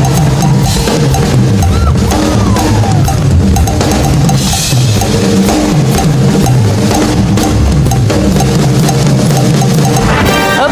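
A live pop band plays an instrumental passage with a steady drum-kit beat and a rhythmic bass line. A cymbal wash comes in near the middle.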